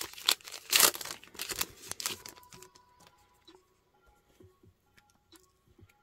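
A Pokémon TCG booster pack's foil wrapper being torn open and crinkled by hand: a quick run of sharp rustling tears over about the first two and a half seconds, then only faint handling.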